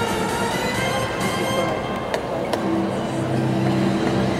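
Music playing over a large sports hall amid arena background noise, with two sharp clicks about two seconds in and a steady held tone in the music from about halfway on.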